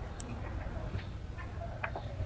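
A few light, irregular clicks and taps of food being handled: carrot slices set down on a ceramic plate, then hands reaching to the wooden board, over a low steady background rumble.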